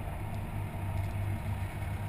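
Steady low rumble of a vehicle engine running, with a slight pulsing throb.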